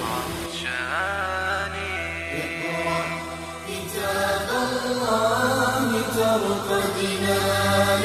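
Background music of a chanted, melodic vocal line held over a steady low drone.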